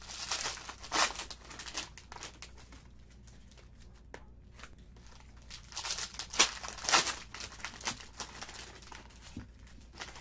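Plastic wrapper of a Prizm basketball trading-card pack being torn open and crinkled by hand, in two bursts: one at the start and a louder one about six seconds in, with light handling rustle between.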